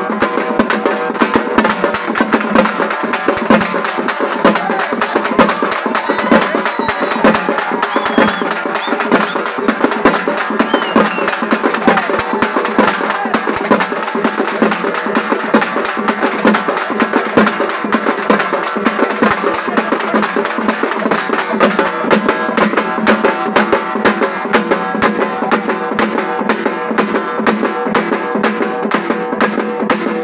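Group of hand-held drums beaten with sticks in a fast, driving rhythm, over a held pitched melody line.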